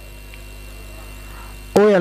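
Steady electrical mains hum from a microphone and sound system, heard plainly in a pause in the talk. A man's voice comes back in near the end.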